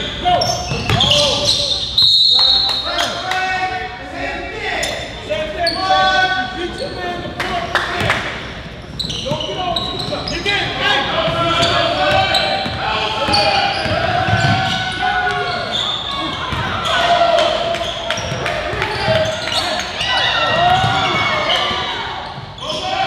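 Basketball game play in a gym: the ball bouncing on the hardwood floor amid players' voices calling out, echoing in the large hall.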